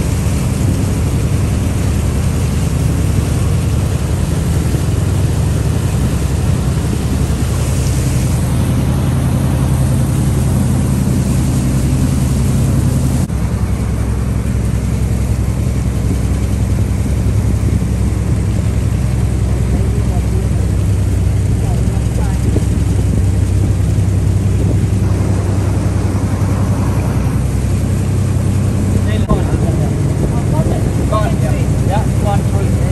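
Boat engine running steadily under way, a low drone heard from on board, with a slight shift in its tone about thirteen seconds in.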